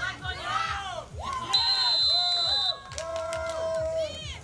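A referee's whistle blows one steady, high blast lasting about a second, starting about a second and a half in; it is the loudest sound here. Around it, spectators chant and shout.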